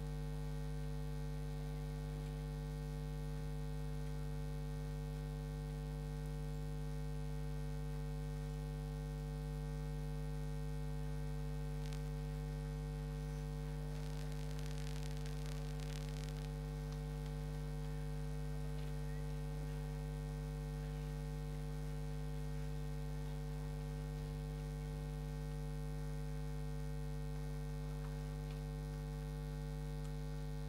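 Steady electrical mains hum: one low tone with several higher overtones stacked above it, holding at an even level throughout. A brief faint rustle comes about halfway through.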